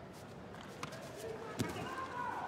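Quiet arena ambience with faint voices and a few soft thumps of bare feet and bodies on the judo tatami, the sharpest a little over one and a half seconds in.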